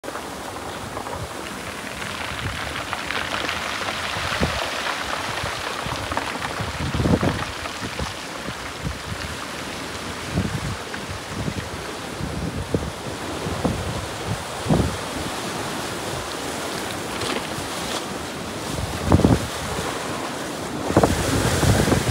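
Ocean surf washing and breaking on a rocky lava shoreline, a steady rush, with wind buffeting the microphone in several brief gusts.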